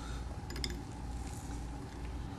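Quiet room tone: a steady low hum with faint hiss, and a few faint light ticks about half a second in.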